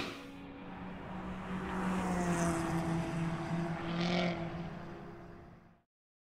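A steady engine-like hum with a low held tone. It swells over the first couple of seconds, holds, then fades out to silence shortly before the end.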